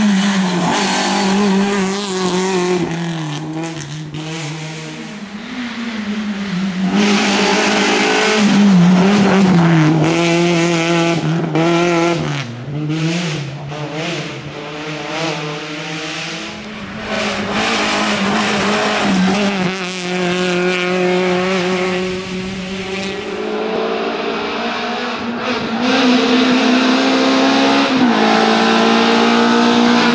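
Suzuki Swift rally car's engine revving hard on a hill stage, its pitch climbing and dropping again and again through gear changes and corners, loudest as the car passes close.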